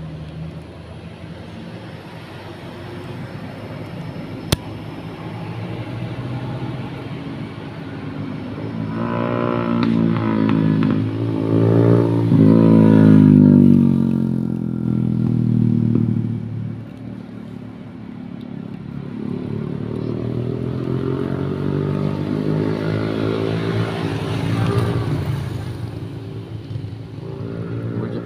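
Motor vehicles passing on the road: one swells to a loud peak about halfway through, its engine pitch falling as it goes by, then a second builds up and fades in the last third. A single sharp click about four and a half seconds in.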